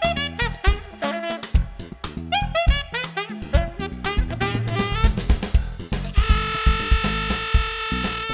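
Jazz-funk music: a saxophone playing quick melodic runs over a drum kit, then a long held note from about six seconds in.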